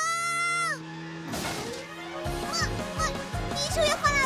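A loud, honk-like held call with a rising start and a falling end, lasting under a second, followed by a brief whoosh; about two seconds in, upbeat cartoon music with a steady beat starts.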